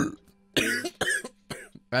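A man's mock coughing noises made close into the microphone as a joke, in several short bursts.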